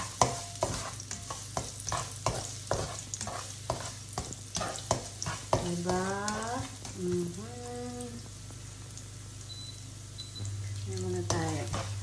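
Minced garlic sizzling in oil in a nonstick frying pan while a plastic slotted spatula stirs it, scraping and tapping against the pan about three times a second for the first five seconds. The garlic is being toasted as the first step of garlic fried rice. A short wordless voice sound comes about six seconds in.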